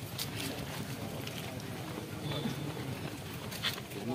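Outdoor street ambience: a steady noisy hubbub with faint voices of people nearby and a few light clicks.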